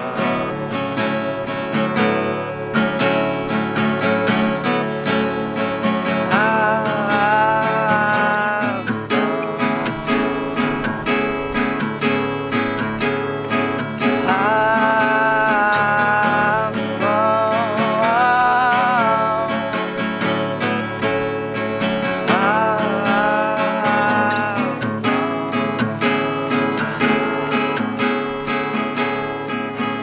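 Acoustic guitar strummed and picked steadily, with a man's voice singing several long held phrases over it that come and go.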